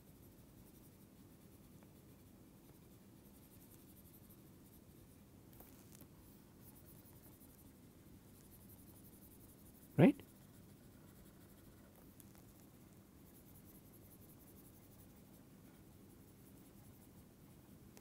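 Faint, steady scratching of a stylus drawing on a tablet as shapes are filled in, with one short spoken word about ten seconds in.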